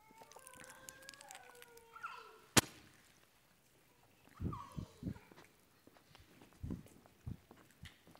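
Quiet congregation handling prefilled plastic communion cups: scattered faint crackles and clicks, one sharp click about two and a half seconds in, and a few soft low thumps in the second half. A faint wavering tone sounds during the first two seconds.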